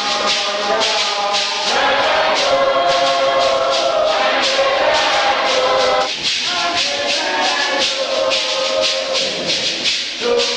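A choir or congregation singing a hymn in unison, held notes over a steady beat of shaken rattles or tambourines.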